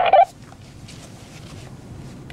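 A man's short, warbling laugh that cuts off about a quarter second in, followed by steady low background noise.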